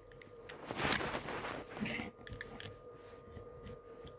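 Faint rubbing and rustling of a hand against the recording phone, with a few light plastic clicks as the toy fire engine's ladder is pulled out, loudest about a second in. A faint steady hum runs underneath.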